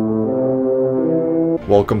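Shofar (ram's horn) blast: one long held note that stops short about one and a half seconds in.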